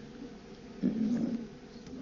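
A man's short, low hesitation sound, soft and voiced, about a second in; otherwise quiet room tone.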